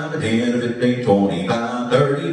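A man's auctioneer chant: a rapid, rhythmic, sing-song run of number words, the $5 bracket counted with the handle dropped.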